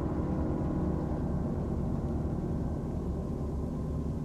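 Low, sustained ringing drone from the trailer's soundtrack, the long tail of the sting under the title card, slowly fading.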